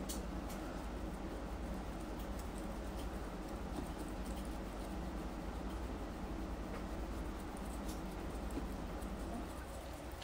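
Microfiber cloth rubbing polishing compound over the clear coat of a pewter model car: a soft, steady scrubbing with a few faint ticks, working the oxidized haze out of the clear coat. A low steady hum runs underneath.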